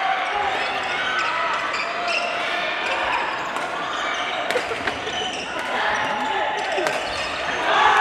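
Echoing din of a badminton hall with several matches going on: overlapping shouts and voices from around the hall, with many short sharp clicks from about halfway through, and a louder shout just before the end.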